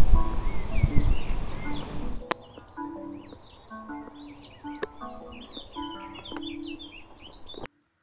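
Birds chirping over a loud low rumbling noise. About two seconds in, this cuts to a quieter passage of short, simple melody notes, with birds still chirping. The sound ends abruptly near the end.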